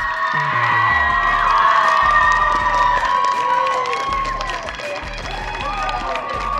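A crowd of spectators cheering and screaming in high voices, celebrating a championship-winning point, over background music. The cheering is loudest around the middle and eases toward the end.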